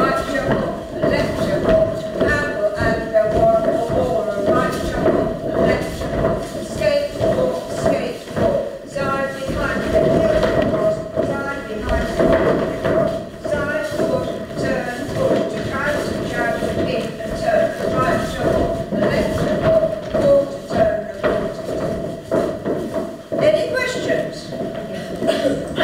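Many pairs of shoes stepping and shuffling on a wooden floor in a line dance, with a voice running over the steps.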